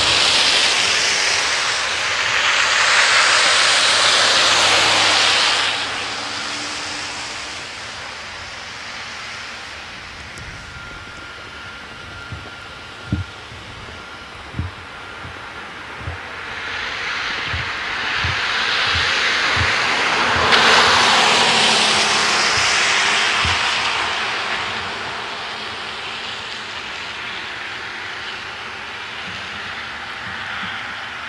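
Cars passing on a wet, slushy street: two long swells of tyre hiss, one at the start and one in the second half, each rising and fading away. Between them come a few soft thumps.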